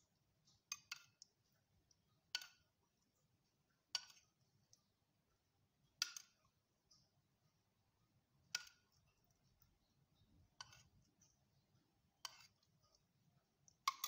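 A metal spoon clinking against a small saucepan while scooping out melted butter: about nine light clinks, a second or two apart.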